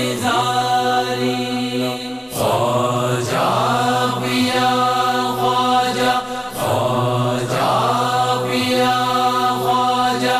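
Devotional song in Punjabi: long held sung notes, phrases starting roughly every four seconds, over a steady low drone.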